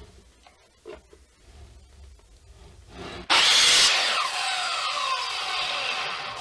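Sliding miter saw cutting the corner off a plywood template: the saw comes in suddenly about three seconds in, loudest at first, then its whine falls steadily in pitch as the blade spins down after the cut. A few faint clicks come before it.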